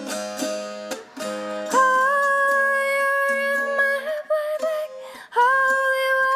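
Appalachian mountain dulcimer plucked in a short run of notes, then a woman's wordless held vocal note for about two seconds over the instrument, a few shorter notes, and another held note starting near the end.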